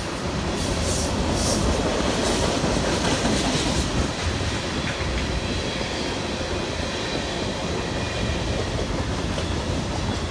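Freight cars of a CN mixed freight train rolling steadily past, their steel wheels running on the rails.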